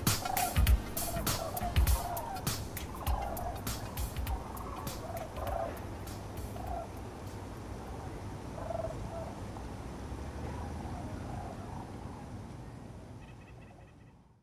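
The last strokes of a drum beat in the first couple of seconds, then short fowl calls about once a second, quieter, until the sound fades out at the very end.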